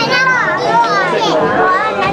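Several people talking and calling out at once, with high children's voices rising and falling in pitch over adult chatter.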